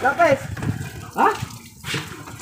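Two short vocal calls about a second apart, the first sliding down in pitch and the second sliding up, followed by a brief sharp click near the end.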